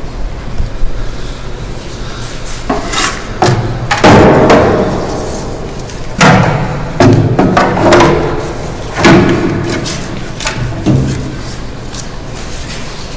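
Half a dozen irregular hollow thuds and knocks, each ringing on briefly and echoing, as gear is handled on a missile's aluminium stand in a hangar.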